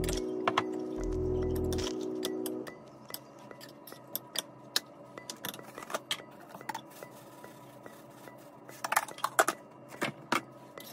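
Background music that cuts off a few seconds in. Then light, scattered clicks and clinks of kitchen handling: a spoon and a plastic jar knocking against a ceramic mixing bowl, with a quick cluster of clinks near the end.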